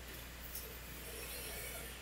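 Quiet room tone through the microphone: a steady low hum under a faint even hiss, with no distinct sound event.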